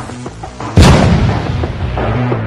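Title-sequence music: a heavy cinematic boom hit a little under a second in, fading slowly over a low sustained bass line.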